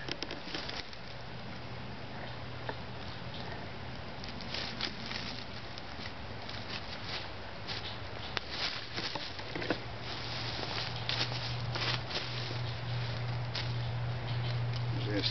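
Bank line being wrapped and pulled tight around two sticks in a lashing: scattered small clicks, scrapes and rustles of cord on wood, with a steady low hum underneath that grows louder near the end.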